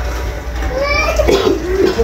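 A small child's voice calling out in the second half, over a kitchen tap running into a sink.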